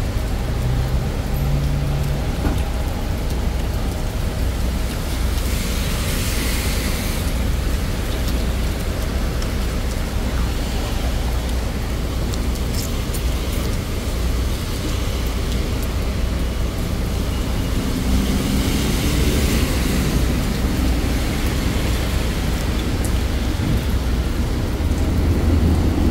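Steady background noise of street traffic, with passing vehicles swelling up about six and twenty seconds in.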